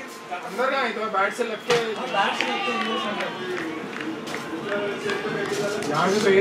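Men's voices talking and calling across a cricket field, with one sharp knock of the leather cricket ball being struck a little under two seconds in.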